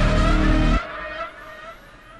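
Car engine sound played back from a music video: loud, dropping off sharply less than a second in and fading away.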